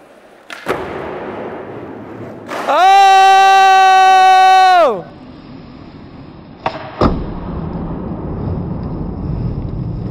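Skateboard wheels rolling over a concrete floor with a steady low rumble, set off by sharp knocks of the board about half a second in and again twice around seven seconds in; the board has eight wheels. In the middle, a very loud held pitched tone lasts about two seconds, sliding up at its start and down at its end.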